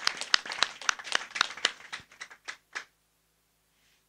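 A small audience applauding, many hands clapping irregularly, thinning out and stopping near the end.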